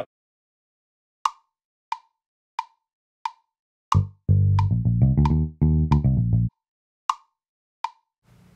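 GarageBand tempo clicks on an iPad, a sharp tick about every two-thirds of a second, setting a tempo in the mid-80s BPM. About four seconds in, a short bass line on the app's Liverpool electric bass plays for about two and a half seconds against the clicks, then stops.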